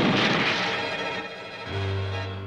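Cartoon soundtrack: a sudden rush of wind sound effect that fades over about a second and a half, under background music, with a low held note coming in near the end.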